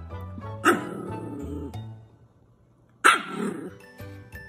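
A dog barks loudly twice, once just after the start and again about three seconds in, over background music that drops out between the two barks.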